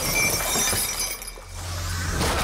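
Action-film sound effects of a heavy iron chain being swung, a sudden metallic crash and jangle. A low drone comes in near the end.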